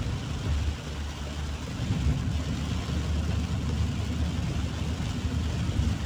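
Inside a car driving through torrential rain: steady engine and tyre rumble on the wet road, with rain hissing on the roof and windscreen.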